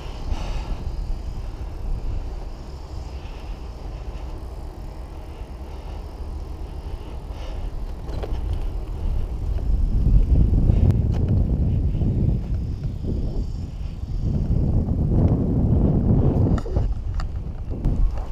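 A bicycle ride heard from the bike: tyres rolling on asphalt, with wind buffeting the action camera's microphone. It gets louder and gustier about halfway through.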